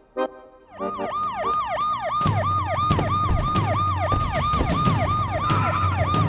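Electronic yelp siren, a quick falling sweep repeating about three times a second, starting about a second in. From about two seconds in a loud low pulsing layer with sharp hits runs under it.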